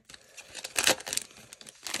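Foil wrapper of a trading card pack crinkling as it is torn open, with one louder crackle about a second in.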